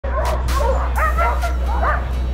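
A harnessed sled dog team yipping and whining together, many short rising-and-falling calls overlapping without a break, the excited din of sled dogs eager to run at a race start.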